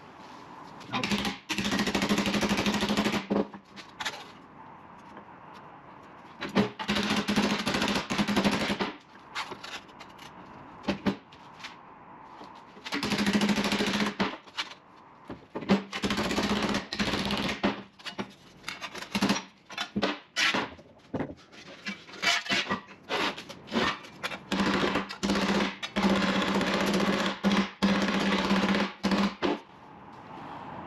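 Hammer striking a strip of sheet steel clamped in a bench vise to bend it over: runs of rapid blows lasting two to three seconds, with single knocks between them.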